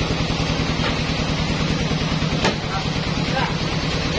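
Band sawmill's engine running steadily with a fast, even low pulse, the saw not cutting. A single sharp knock about halfway through.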